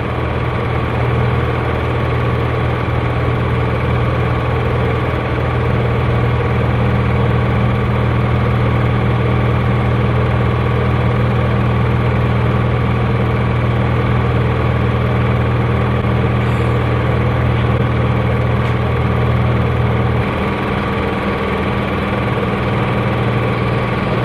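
An engine idling steadily with a low, even hum; it dips slightly about twenty seconds in.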